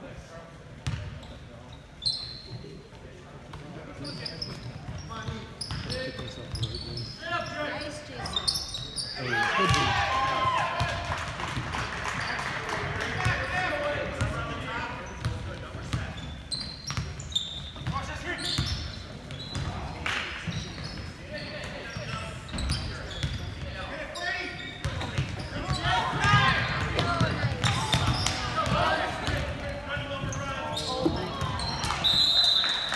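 Basketball game on a hardwood gym court: the ball bouncing, short high shoe squeaks, and players and spectators calling out and talking, loudest about ten seconds in and again near the end, all echoing in the hall.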